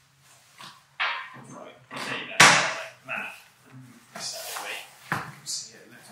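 Handling noise from unpacking: cardboard box flaps rustling and a metal belt-pulley assembly being lifted out and set down on a workbench, with a run of short knocks, the loudest about two and a half seconds in.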